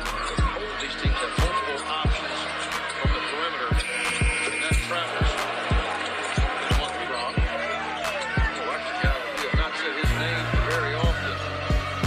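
Hip-hop backing track with a steady, thumping beat and vocals.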